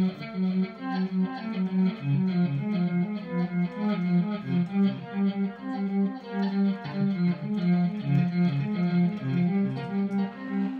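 Electric guitar playing a steady pulsing ostinato, about two and a half notes a second, through a slow-gear effect that softens the pick attack and a 420-millisecond delay with one repeat. Only every other note is picked; the echo plays the notes in between in tempo.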